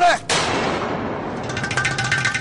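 Dramatic background-score sting: a loud crash-like whoosh that fades over about a second, then, about halfway through, a rapid rattling beat over held tones.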